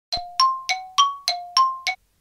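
Seven quick bell-like chime strikes, about three a second, alternating between a lower and a higher note, each ringing briefly before the next; the sequence cuts off suddenly.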